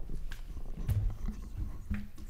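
Scattered low thumps and a few light clicks of people moving about near the desk and podium microphones, with a heavier thud about a second in.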